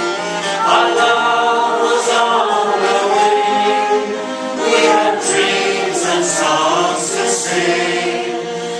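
Several voices singing an Irish folk ballad together, accompanied by a bowed fiddle and strummed acoustic guitar.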